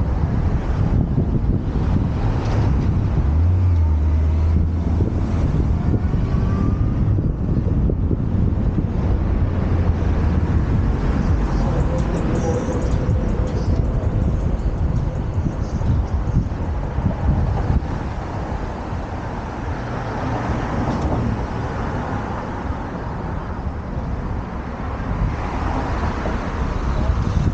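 Downtown street traffic heard from a moving bicycle, with wind rumbling on the microphone; the noise eases a little in the second half.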